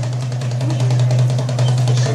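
Egyptian tabla (goblet drum) played live in rapid strokes, close to a roll, over a steady low hum.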